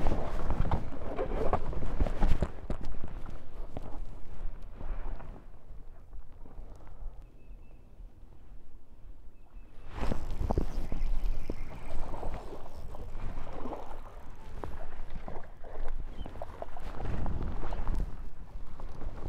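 Knocks, bumps and footsteps of people moving and handling gear on a fiberglass bass boat's deck. It goes quieter for a few seconds in the middle, then louder again with more thumps after about ten seconds.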